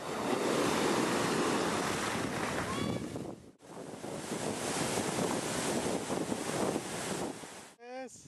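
Breaking sea surf crashing and splashing, loud and rushing. It cuts off suddenly about three and a half seconds in and is followed by water rushing over rocks in a shallow stream.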